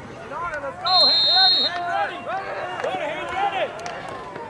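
A referee's whistle blows once, a steady shrill note lasting just under a second, about a second in. Many voices of spectators and players shout and call over one another around it.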